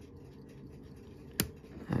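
A single sharp metallic click about a second and a half in: steel watchmaker's tweezers snapping shut as they slip off a tight taper pin on a pocket-watch movement. Otherwise only faint room tone.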